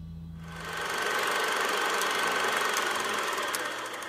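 The last low double-bass note dies away. About half a second in, a steady mechanical rattling noise takes over, holds evenly, and cuts off abruptly just after.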